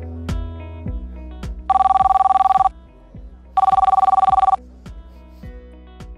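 A telephone ringing twice, each ring about a second long with a rapid warbling trill, over soft background music.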